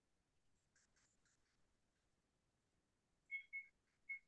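Near silence, with two short, faint, high-pitched chirps near the end.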